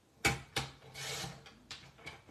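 Small sliding-blade paper trimmer cutting cardstock. A sharp click comes first, then the blade carriage scrapes along the rail for about half a second, with a few lighter clicks.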